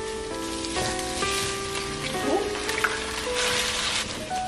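Background music with held notes over the sizzle of potatoes, peppers and spinach frying in a skillet; the sizzle swells near the end.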